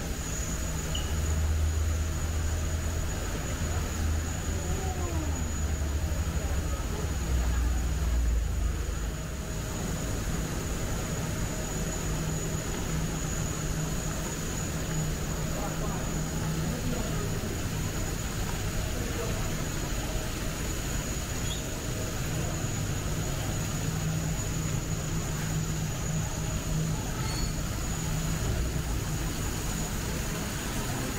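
Steady indoor ambience: an even rushing hiss over a low hum that is heavier for the first ten seconds or so, with faint voices of people around.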